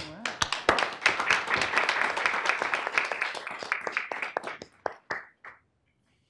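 Audience applauding, a steady patter of many hands that thins to a few last claps about five seconds in.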